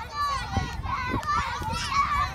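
Young children's high-pitched voices calling and chattering as they play.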